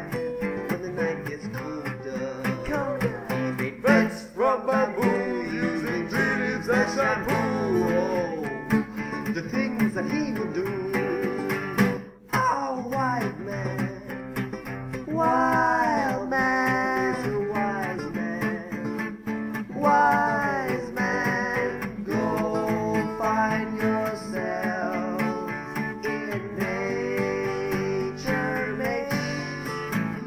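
Music: a song with strummed acoustic guitar and a sung melody.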